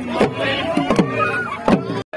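Assamese dhol beaten in a steady rhythm for Bihu, each stroke dropping in pitch, with men's voices singing and calling along.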